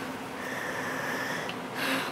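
A quiet pause in the talk: steady faint background hiss with a light hum, and a short breath drawn just before the end.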